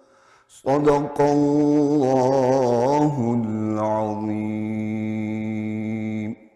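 A male qari's voice reciting the Quran (tilawat) in a melodic chanting style. After a short pause it enters with a phrase that wavers in pitch in the middle, then settles into one long held note.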